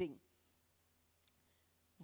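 A speaker's pause: the tail of a woman's word at the start through a handheld microphone, then near silence broken by one faint short click about a second in.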